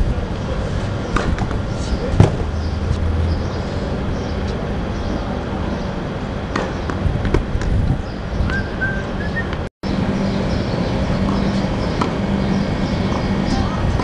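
Tennis balls struck by rackets on an outdoor court: sharp hits a few seconds apart, the loudest about two seconds in, over steady spectator chatter. The sound cuts out completely for a moment about ten seconds in.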